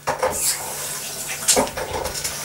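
Water running steadily, as from a tap, with a few light knocks.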